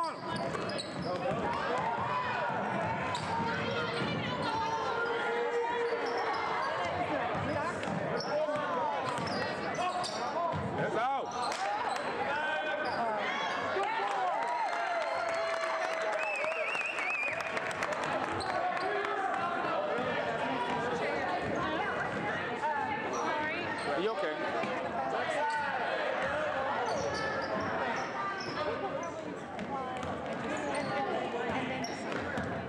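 Basketball game in a gymnasium: a ball dribbling on the hardwood court, with a steady mix of spectators' voices and shouts echoing in the hall.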